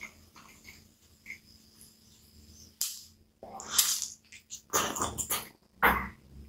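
Close-up eating sounds of someone biting and chewing a hot dog topped with cabbage: faint wet mouth clicks at first, then from about three seconds in a run of loud, moist chewing bursts.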